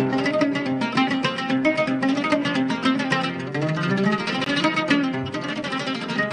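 Oud played fast in a solo Arabic taqsim improvisation: a rapid, dense run of plucked notes.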